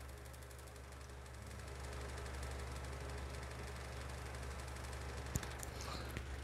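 Desktop PC humming steadily as it boots, growing a little louder about two seconds in, with a faint click near the end.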